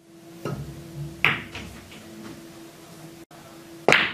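Pool shots on a table: a cue tip striking the cue ball, then a sharp click of ball hitting ball about a second in, and another cue strike near the end, over a faint steady hum.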